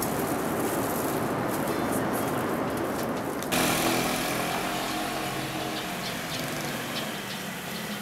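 Steady airliner cabin noise in flight, cutting off suddenly about three and a half seconds in. Then street sound with a small motor-scooter engine running steadily.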